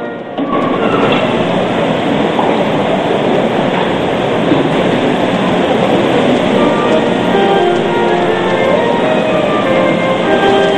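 Church choir and band music heavily covered by a dense, loud noisy wash that comes in suddenly just after the start, with the melody showing through again in the last few seconds.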